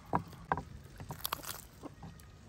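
Knife cutting apart a raw whole chicken: a handful of short, sharp cracks and wet snaps as the blade works through flesh and joints.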